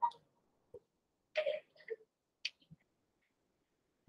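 Mostly quiet, with a few faint, isolated clicks and short handling sounds. The loudest is a brief sound about a second and a half in.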